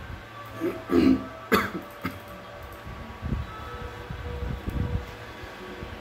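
A man clearing his throat once about a second in, with a short breath after it, then low rumbling noise close to the microphone.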